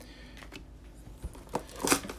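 Quiet handling of trading cards and cardboard boxes being moved on a tabletop: faint rustling, with a couple of short sharp scuffs near the end.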